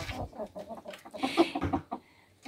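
Several chickens roosting in the coop rafters, clucking quietly in short broken calls.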